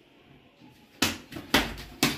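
Two sharp, loud thumps, the first about a second in and the second half a second later, each dying away quickly.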